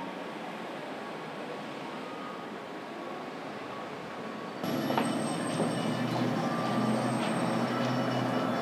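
Street traffic ambience: a steady wash of vehicle noise. A little past halfway it cuts to a louder, lower rumble, like a nearby truck or bus engine.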